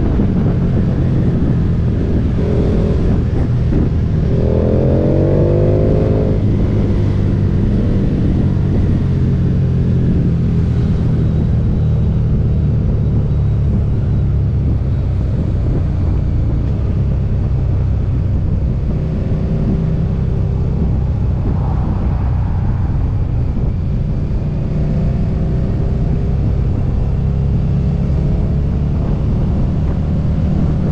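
KTM Super Duke GT motorcycle's V-twin engine running at road speed, heard close from a camera on the bike with road noise, a steady low drone. Its note rises briefly about five seconds in as it accelerates.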